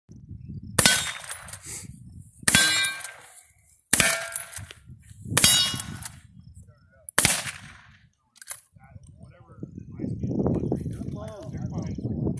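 Five shots from an 1895 Winchester lever-action rifle, about one and a half seconds apart, each followed at once by the ring of a struck steel target.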